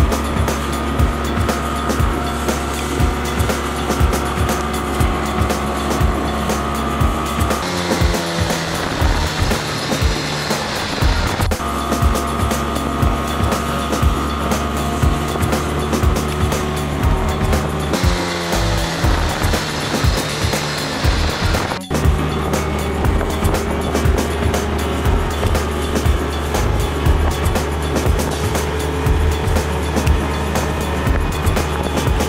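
Background music with a steady beat and held chords that change every few seconds, with a brief break about 22 seconds in.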